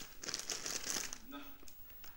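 Paper or plastic wrapping crinkling as something is unwrapped or handled, heard through a television speaker. The crinkling is densest in the first second.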